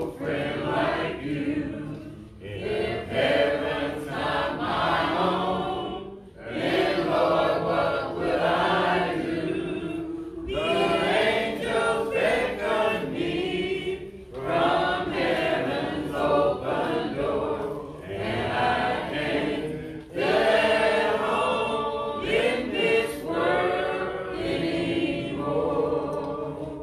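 A congregation singing a hymn a cappella, many unaccompanied voices together in phrases of a few seconds with short breaks for breath between them.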